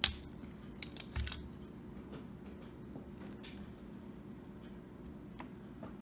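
Side cutters snipping the excess end of a guitar string at the tuning post: one sharp snip right at the start, followed by a few faint clicks and a soft thump of handling.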